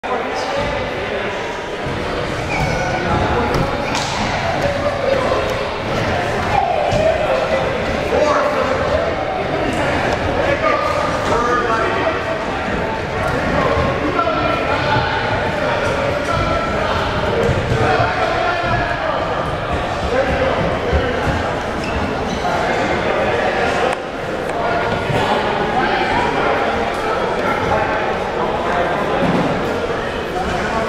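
Crowd chatter of many overlapping voices echoing in a large indoor hall, with scattered thuds throughout.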